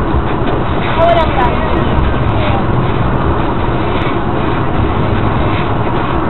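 Steady road and tyre noise of a car driving at highway speed, heard inside the cabin, with a few brief voice-like sounds about a second in.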